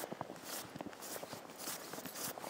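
Footsteps crunching through deep, fresh powder snow at a steady walking pace, about two steps a second.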